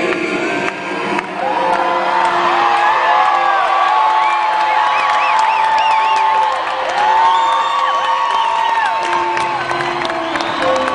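Large concert crowd cheering and whooping at the end of a song, many rising and falling shouts over one another, while the music holds a sustained chord underneath.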